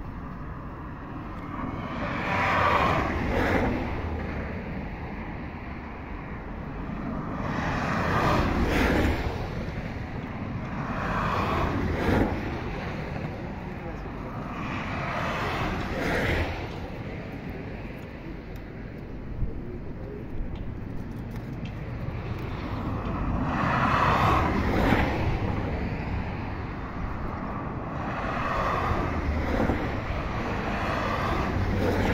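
Highway traffic: vehicles passing one after another, each swelling and fading over a few seconds, over a steady low rumble of wind on the microphone.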